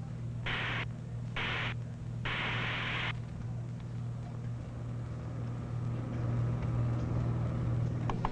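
Three bursts of hiss about a second apart, the last one longer, over a steady low hum. The hissing stops about three seconds in, leaving the hum.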